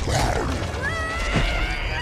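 A monster's growling cry from a film fight soundtrack, its pitch rising about a second in, over a deep rumble.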